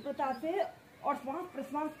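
A woman speaking in Hindi, giving spoken yoga instruction.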